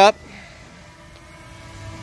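DJI Mini 2 drone hovering a few metres away, its propellers giving a faint, steady hum with a few thin whining tones. A low hum grows slightly near the end.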